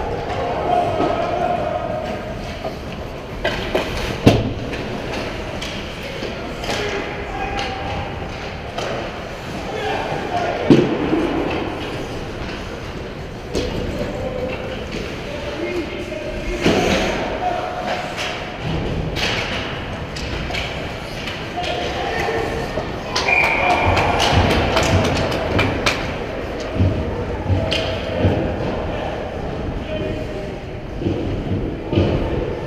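Youth ice hockey play in an echoing indoor rink: skates on ice and sticks and puck knocking, with a few sharp impacts standing out, and voices calling out across the rink.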